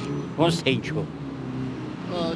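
A man speaking briefly, about half a second in, over steady background street traffic from passing cars.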